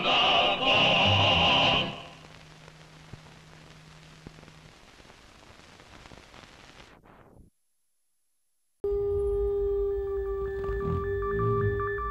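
A choir sings and holds the final note of a song, which ends about two seconds in. Faint film-soundtrack hiss with a low hum follows, then a moment of total silence. Electronic ident music with a long steady tone starts about nine seconds in.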